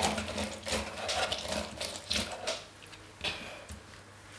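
A lemon half being pressed and twisted on a plastic hand citrus reamer: repeated rough grinding strokes as the juice is squeezed out. The strokes stop after about two and a half seconds, and one brief knock follows.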